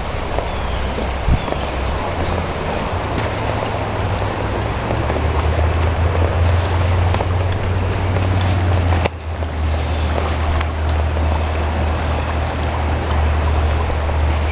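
Boardman River rushing steadily through rapids, a continuous loud wash of water with a deep low rumble beneath it.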